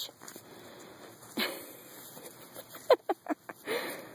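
A puppy tussling with its leash and a plush toy: short huffs and scuffles, with a quick run of clicks about three seconds in.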